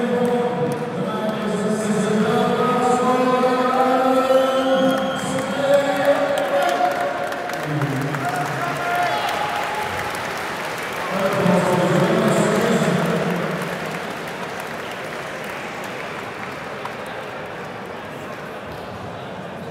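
A ring announcer's voice over the hall's PA system, drawn out and echoing as he reads out the official result of a boxing bout. The crowd applauds and cheers, then the noise dies down over the last few seconds.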